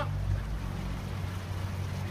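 Shallow creek water running over rocks, a steady rush, with a steady low rumble underneath.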